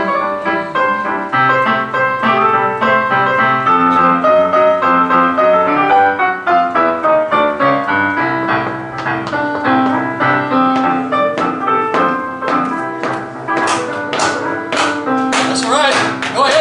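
Boogie-woogie piano played on a Roland digital keyboard: a rolling bass line under right-hand chords and runs. From about halfway, sharp clicks join in with growing frequency.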